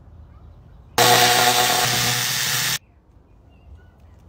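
A loud motor with a rushing hiss comes on suddenly about a second in, runs steadily, and cuts off abruptly just under two seconds later.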